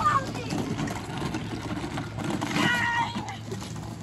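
Young children's voices: a high-pitched wordless call from a child about two and a half seconds in, over the low rolling rumble of pedal-tractor wheels on wet concrete.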